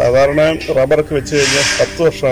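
Speech only: a man talking in Malayalam.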